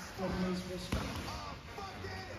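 Indistinct voices talking in the background, with one sharp knock a little under a second in.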